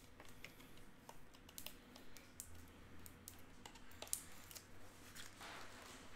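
Faint, irregular light clicks and taps of a computer keyboard being typed on, with a soft rustle near the end.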